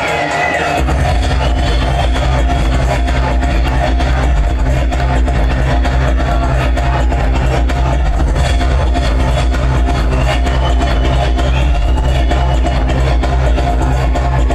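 Live electronic dance music played loud through a concert PA, heard from the crowd; a deep, pulsing bass line comes in about a second in and drives on under the rest of the mix.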